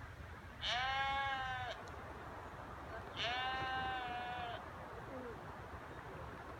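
Sheep bleating twice, two long calls each held at a steady pitch for about a second, the second a little longer.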